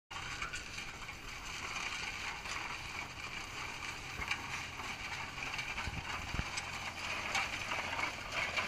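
Case steam traction engine driving slowly, its gearing and running gear giving a steady clatter of small ticks and clanks.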